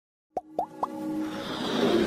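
Logo-animation intro sting: three quick rising pops about a quarter of a second apart, then a swell of music that grows steadily louder.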